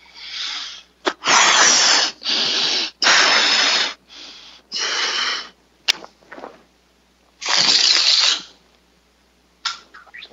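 A rubber balloon being blown up by mouth: a run of forceful breaths, about six, each roughly a second long, then a sharp click about six seconds in and one more second-long rush of air near the end.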